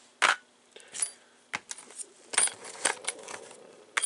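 Small metal hand tools clinking and tapping against each other, the plastic tool box and the tabletop while being rummaged through, in a string of about seven sharp clinks.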